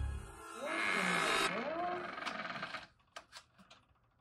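A wooden front door being opened: a brief rush of hiss with a wavering creak about half a second in, then a few light clicks and knocks, tailing off to quiet.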